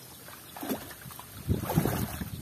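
Muddy pond water sloshing and splashing around a person wading waist-deep. It is faint at first and turns louder and more churning from about one and a half seconds in, as he shifts and straightens up in the water.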